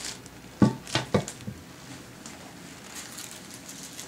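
Three sharp knocks about a second in, the first the loudest with a short ring: boxed band saw parts knocking as they are handled and set down, followed by faint rustling of packaging.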